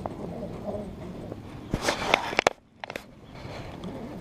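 A short run of sharp clicks and knocks about two seconds in, over a faint steady background noise.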